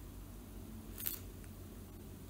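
Faint handling sounds of fingers working a tiny bead and wire headpin over a paper-covered table, with a brief soft rustle about a second in.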